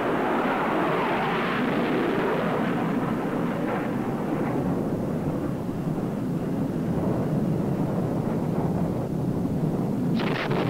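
Steady rushing roar of a jet in flight, its higher hiss thinning out in the second half.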